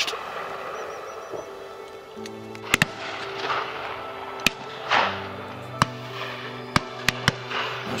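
Shotguns firing at driven game birds over background music of held chords. Several sharp shots come in the second half, some in quick succession.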